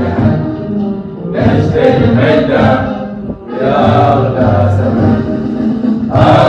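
A group of mostly male voices singing a patriotic song together in unison, in long held phrases with short breaks about a second in and just past the halfway point.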